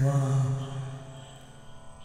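A man's voice chanting a devotional verse on one long held note, which fades out within the first second, leaving quiet.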